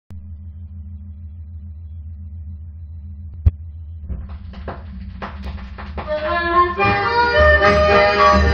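A baião record playing on a turntable: a steady low hum with a single sharp click about three and a half seconds in, then the music starts about four seconds in with percussive strokes, and a melody joins about six seconds in, growing louder.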